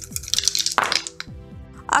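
A handful of dice shaken in cupped hands and thrown into a wooden dice tray. They land with a sharp clatter about a second in and rattle briefly before settling.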